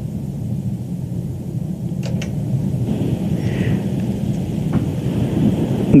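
Telephone-line noise while a caller is being patched into a radio broadcast: a steady rumbling hiss that slowly grows louder, with a couple of faint clicks.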